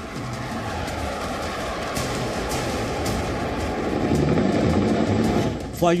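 Fighter jets flying past in formation: a steady jet-engine roar that grows louder about four seconds in.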